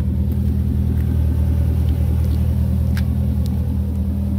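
2009 Chevrolet Corvette's 6.2-litre LS3 V8 idling steadily, with one faint click about three seconds in.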